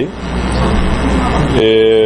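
Steady rumbling and rushing background noise like road traffic, with no words over it. Near the end a man's voice holds a drawn-out hesitation sound.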